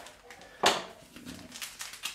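A paper or foil coffee packet being handled: one sharp rustle or knock about half a second in, then a few faint handling noises.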